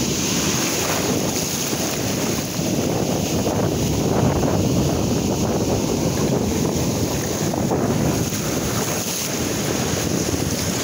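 Ocean surf breaking and foam washing up the sand in a steady rush, with wind buffeting the microphone.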